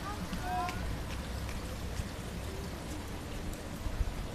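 Steady splashing and trickling of swimming pool water moving at the pool's edge.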